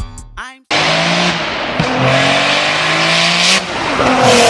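Car engine and exhaust running loudly. It cuts in suddenly about a second in, with a low note that steps down in pitch partway through.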